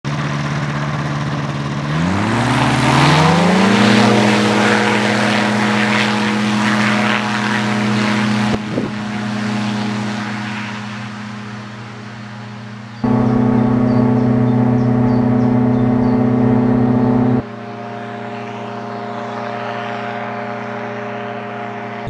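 CFM Shadow microlight's two-stroke engine and pusher propeller idling, then rising in pitch as the throttle opens for the take-off run about two seconds in, holding steady at full power and fading as the aircraft rolls away. About 13 seconds in the engine sound jumps suddenly louder for about four seconds, then drops back to a fainter steady drone.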